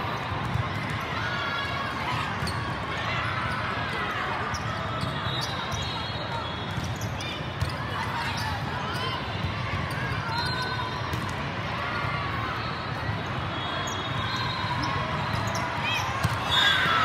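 The din of a volleyball tournament in a big echoing hall: volleyballs being hit and bouncing, sharp smacks scattered through, under continual shouts and calls from players and onlookers.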